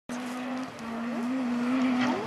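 Rally car engine held at high revs as the car approaches at speed, one steady note growing gradually louder, with a brief dip just before the first second.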